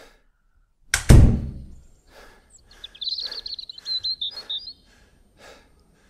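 A heavy thump about a second in, then birds chirping briefly over soft, evenly spaced taps about two a second.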